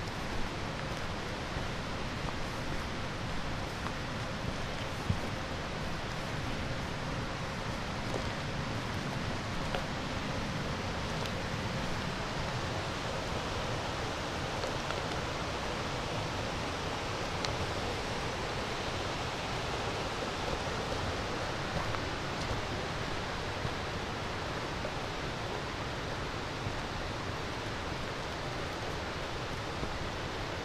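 Steady rushing of a forest stream, with a few faint ticks now and then.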